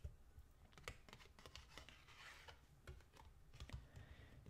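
Faint, irregular taps, clicks and light rustles of a tarot card being handled and turned over by hand.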